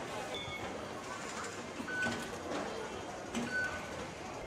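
Metro station concourse noise with about three short electronic beeps from the Octopus card readers on the fare gates as passengers tap through, with a few light clicks and faint background chatter.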